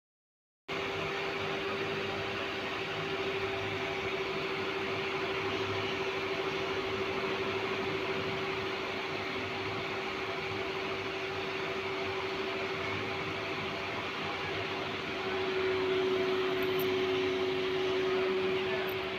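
A machine's steady hum, one constant mid-pitched tone over an even hiss, starting just under a second in and growing a little louder near the end.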